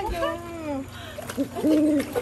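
Drawn-out hooting vocal sounds: a long call sliding down in pitch, then a short held "hoo" near the end.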